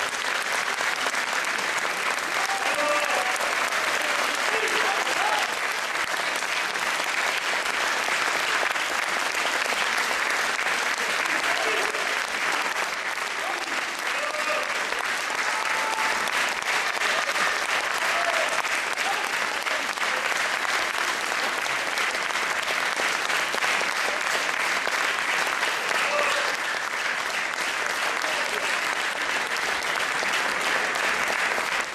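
Concert-hall audience applauding steadily after a performance, with a few voices calling out now and then through the clapping.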